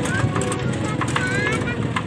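A vehicle driving along a bumpy dirt track: a steady low engine rumble with regular rattling clicks, and a few short high chirps over it.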